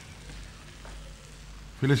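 Faint, steady sizzle of food frying in a pan on a stove hob, over a low hum.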